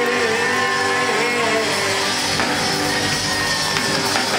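Live rock band with electric guitars playing, with long held notes, one wavering over the first second or so.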